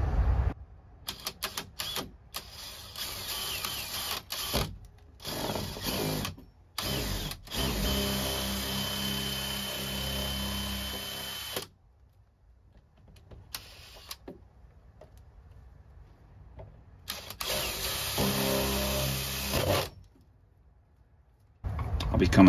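Cordless drill with a one-inch spade bit boring through a shed wall. It runs in several short trigger-pulled bursts, then in longer steady runs of about three to four seconds each, with a thin high whine in the first long run and a quiet pause between them.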